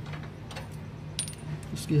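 A few light metal clinks, one with a short high ring about a second in, from a steel nut and washers being worked off a Mahindra Bolero's anti-roll bar link bolt by hand.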